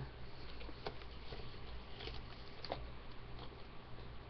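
Handling noise from a webcam being moved by hand: a few scattered light clicks and knocks over a steady low hum.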